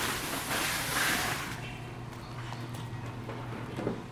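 Thin packing foam sheet rustling and crinkling as it is pulled off, loudest in the first second and a half, then quieter handling noises with a few light knocks as the folding tonneau cover is laid out.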